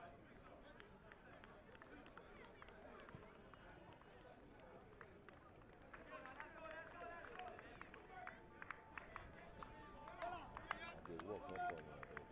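Faint, distant voices of players calling and talking on an open football pitch, with a few sharp clicks in the second half.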